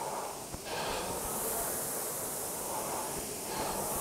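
Concept2 rowing machine's air-resistance flywheel whooshing as it is rowed at an easy pace, the air noise swelling from about a second in and easing off near the end.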